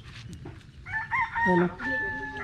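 A rooster crowing, starting about a second in, with a long held final note.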